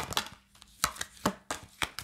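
A round lidded case and a deck of cards being handled: a string of sharp clacks and taps, about six in two seconds, some in quick pairs, as the lid comes off and the cards are taken out.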